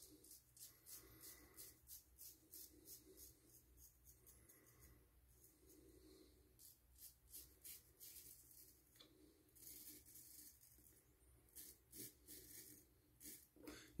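Faint scratching of a straight razor cutting through stubble against the grain on the cheek, in quick short strokes about three a second, in several runs with pauses between.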